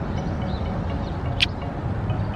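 Steady low rumble of city street background noise, with one short click about one and a half seconds in.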